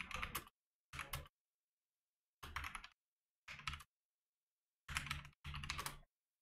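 Typing on a computer keyboard: six short bursts of rapid keystrokes with pauses between them.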